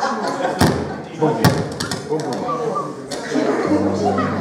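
Indistinct murmur of people talking in a room, with two sharp thumps about half a second and a second and a half in. Near the end a steady low tone begins.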